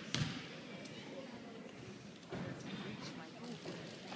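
A basketball bounced on a hardwood gym floor, a sharp echoing bounce just after the start, as a free throw is lined up; low voices murmur in the hall the rest of the time.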